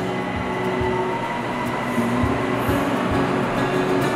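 An elevated electric metro train (Bangkok BTS Skytrain) running past alongside the platform: a steady rolling rumble with a faint motor whine.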